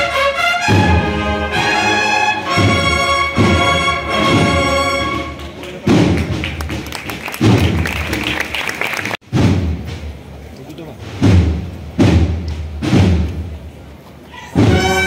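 Cornet-and-drum band playing a processional march: held brass chords at first, then slow, heavy drum strokes about a second apart. The sound cuts out suddenly a little past halfway, and the drum strokes carry on.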